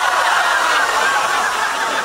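Studio audience laughing, many people at once, loud and sustained.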